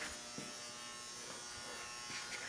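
Faint steady electrical buzz with a fine whine: background room tone.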